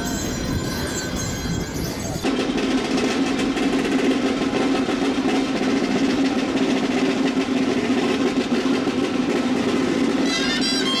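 Drums of a street procession band playing a continuous rapid roll, starting abruptly about two seconds in.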